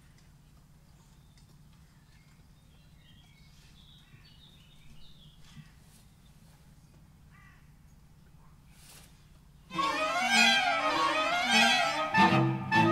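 A quiet pause with a steady low hum and a few faint high chirps, then about ten seconds in a string quartet comes in suddenly and loudly, the violins playing quick phrases that rise and fall in pitch.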